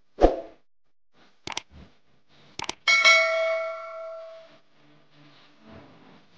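Edited-in sound effects over a silent track: a soft thump, a few sharp clicks, then a bell-like ding that rings out and fades over about a second and a half.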